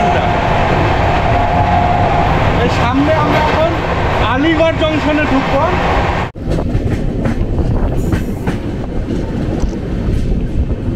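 Rajdhani Express coach running at speed, the steady noise of wheels on the track heard from inside at the window. About six seconds in it cuts off suddenly and gives way to a rougher running noise broken by many short knocks and gusts.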